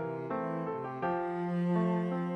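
Slow, tender instrumental music from a keyboard arrangement: held chord notes that change every half second or so, with no voice.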